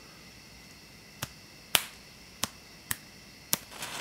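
Five sharp clicks, spread over about two and a half seconds, as a finger flicks the head of a homemade strike-anywhere match coated with toy cap-gun cap compound. The last flick sets it alight.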